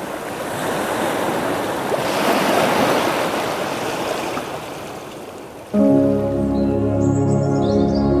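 Ocean surf breaking on rocks: a steady rushing wash that swells about two to three seconds in, then eases. About six seconds in, calm music of sustained, layered chords starts abruptly and takes over, louder than the surf.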